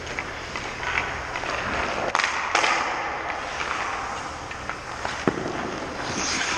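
Ice hockey rink sounds: skate blades scraping the ice, with two loud sharp cracks a little after two seconds in and a single knock near the end, echoing around the arena, typical of pucks struck by sticks and hitting the goalie or boards.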